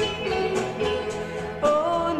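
A woman singing a 1960s Italian pop ballad with vibrato over instrumental accompaniment; a louder, higher held note comes in near the end.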